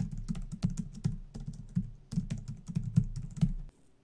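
Fast typing on a computer keyboard: a quick, uneven run of key clicks that stops shortly before the end.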